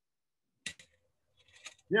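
Two quick sharp clicks about two-thirds of a second in, followed by faint rustling and another small click; a man's voice begins right at the end.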